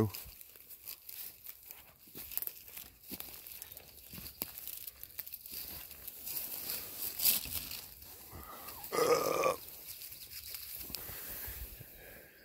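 Dry leaf litter, twigs and brush rustling and crunching in short, irregular crackles as someone moves through the forest floor and reaches down to pick a morel mushroom. A short vocal sound about nine seconds in.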